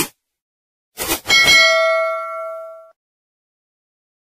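Subscribe-button sound effect: a mouse click, then about a second in another click and a bell ding that rings out and fades over about a second and a half.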